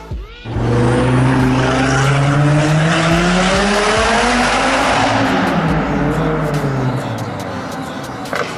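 Turbocharged five-cylinder engine of a modified Ford Focus RS500 pulling hard through a road tunnel, its pitch rising for about three seconds. The sound then slowly drops and fades as the car drives off, echoing off the tunnel walls.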